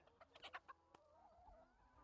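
Faint clucking of hens: a few short clucks, then a low wavering call about a second in.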